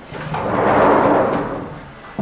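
Glass balcony door sliding open on its track: a rushing rumble that swells and fades over about a second and a half.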